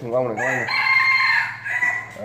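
A rooster crowing once: one long call of about a second and a half, the loudest sound here, just after a brief bit of a man's voice.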